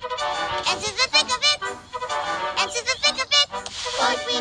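Cartoon characters singing a children's song over backing music, in short quick sung phrases.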